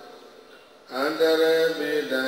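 A man chanting in long, steady held notes. It starts about a second in, after a brief lull.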